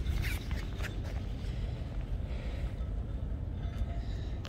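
Low, steady rumble of wind buffeting a phone's microphone outdoors, with light handling noise and a brief click just after the start.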